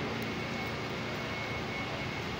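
Steady rushing background noise with a faint high-pitched whine held throughout.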